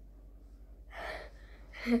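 A child's breathy gasp about a second in, followed near the end by a short burst of laughter.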